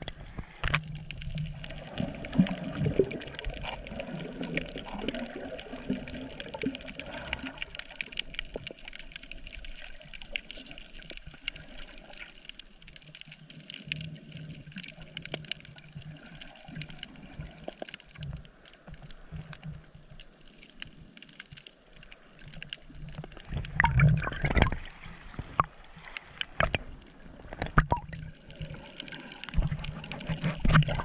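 Sea water moving around a waterproof camera held just under the surface. It is a muffled, uneven water noise with scattered crackles and louder bursts about 24 seconds in and near the end.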